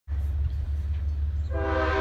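Freight locomotive air horn sounding a steady chord of several notes, beginning about one and a half seconds in, over a low rumble.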